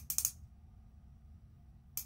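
A quick run of small plastic clicks from the click dial of a Maybelline Instant Age Rewind concealer pen, being clicked to push product up into its sponge applicator. The clicks come in the first moment, and the rest is quiet room noise.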